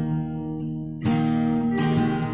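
Acoustic guitar being strummed: a chord rings and fades, then a new strum comes in about halfway through and another near the end.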